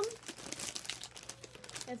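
Plastic cookie packaging crinkling irregularly as it is handled and folded closed.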